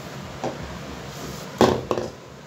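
A gloved hand mixing a thick, wet yogurt-and-spice batter in a glass bowl: handling sounds of the batter and bowl, with a small sharp sound about half a second in and two louder sharp sounds near the end.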